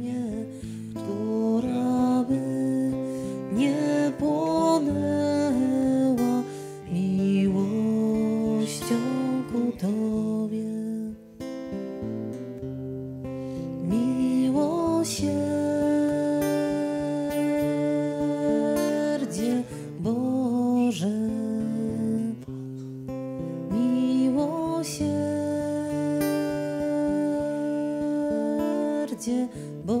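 Slow worship music played on acoustic guitar, with long held notes and changing chords.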